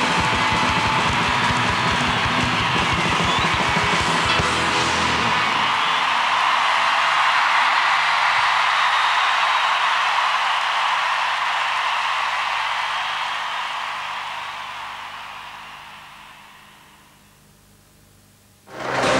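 Live rock concert ending: a band playing with rapid drum hits for about the first five seconds, then a large stadium crowd cheering. The cheering fades out over the last few seconds.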